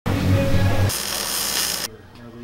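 Workshop power-tool noise: a low mechanical buzz for just under a second, then about a second of harsh high hiss that cuts off suddenly.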